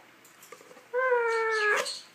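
Lutino Indian ringneck parakeet giving one drawn-out call, starting about a second in and lasting about a second: an even, steady tone that falls slightly and then rises sharply at the end.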